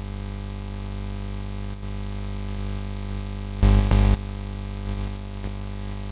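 Steady electronic drone of many held tones, like a sustained keyboard chord, unchanging in pitch. It is broken a little past halfway by a loud, harsh burst of noise lasting about half a second.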